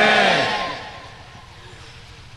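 A preacher's loudly amplified voice ends a shouted phrase through a public-address system, and its echo dies away within about a second, leaving a low background.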